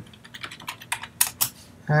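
Computer keyboard keystrokes: a quick, irregular run of about ten key presses.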